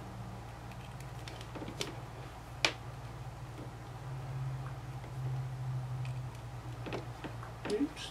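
A few light clicks of alligator-clip test leads being handled and clipped together, the sharpest about two and a half seconds in, over a steady low hum.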